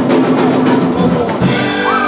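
Live band's drum kit playing a run of quick snare and drum strokes over held notes from the band, landing on a bass drum hit and a crash cymbal about one and a half seconds in, as the band kicks into the song.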